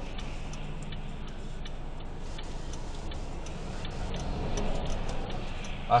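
Turn-signal indicator ticking steadily inside a car's cabin, signalling a left turn while the car waits for oncoming traffic, over the low hum of its engine. Passing traffic grows a little louder near the end.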